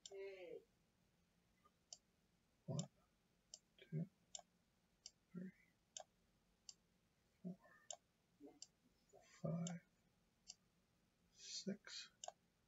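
Computer mouse buttons clicking repeatedly, quiet single clicks roughly every half second to a second. Soft low hums or mutters come between some of the clicks.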